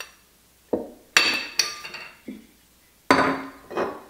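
About half a dozen clinks and knocks of metal and glass, with short ringing tails and the loudest about three seconds in: ground coffee being scooped into a stainless-steel mesh cold-brew filter, and the filter set into a glass mason jar.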